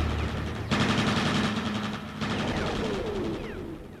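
Dense, rattling, crackling noise with a few falling sweeps as the track's outro fades out. It surges up again about 0.7 and 2.2 seconds in, then dies away near the end.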